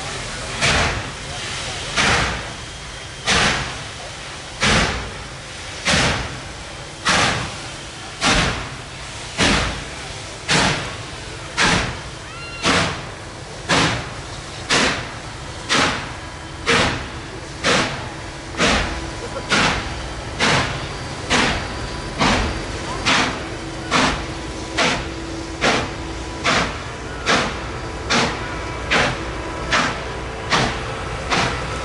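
Norfolk & Western 611, a Class J 4-8-4 steam locomotive, exhausting in slow, heavy chuffs as it pulls a heavy excursion train from a crawl, with a steady hiss of steam between beats. The beats come about one every second at first and gradually quicken as the train picks up speed.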